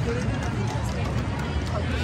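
Crowd ambience outdoors: many people talking at once at a distance, with no single voice standing out, over a steady low rumble.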